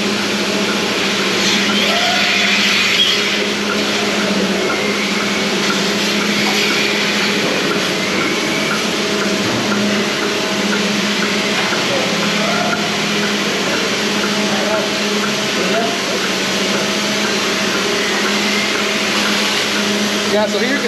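Steady hum of a large dairy parlour's milking equipment running, with the vacuum and milking units at work on rows of cows.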